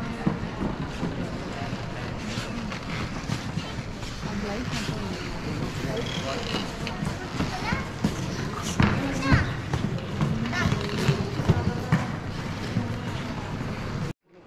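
Crowd of visitors chattering, many overlapping voices with no single clear speaker, echoing in a large domed hall, with a few sharp clicks among them.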